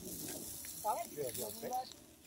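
Meat and vegetable skewers sizzling over charcoal on a small portable barbecue, a soft steady hiss. A voice speaks quietly about a second in.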